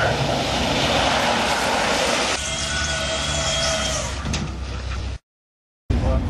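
Electric drag-race vehicle running on the strip: a loud rushing noise with a steady high-pitched electric whine in the middle. It cuts off abruptly about five seconds in.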